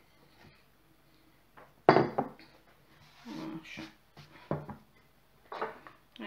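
A single sharp knock about two seconds in from the glass mixing bowl of dough being handled on the wooden worktop, with quieter handling sounds around it.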